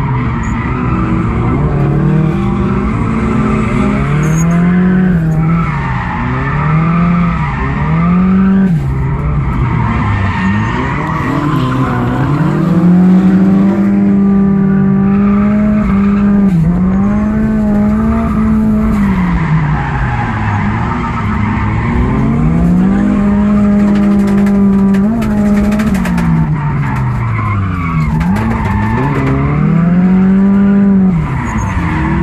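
Drift car's engine heard from inside the cabin, the revs rising and falling over and over and held high for several seconds at a time, with tyres squealing as the car slides sideways through the corners.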